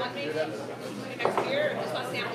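Indistinct speech and chatter of people in a busy room.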